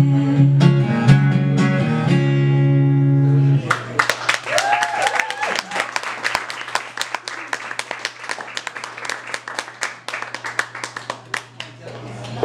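An acoustic guitar and band finish the song on a held chord that stops about four seconds in. An audience then applauds, with one short cheer just after the clapping starts.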